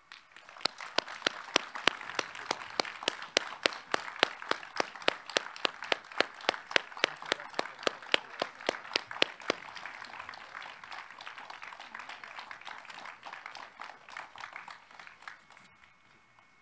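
Audience applauding, with one nearby clapper standing out in a steady beat of about three or four claps a second. The applause fades away near the end.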